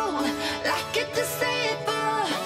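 Background pop music with a singing voice over a steady instrumental backing.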